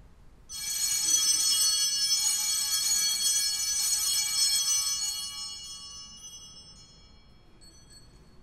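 Altar bells (Sanctus bells) rung at the elevation of the consecrated host: a bright, many-toned ringing that starts suddenly about half a second in, holds for about five seconds, then fades away over the next two.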